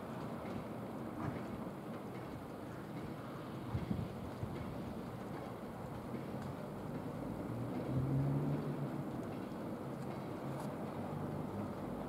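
Freight train of tank cars rolling along the track, a steady low rumble with a few short knocks about four seconds in.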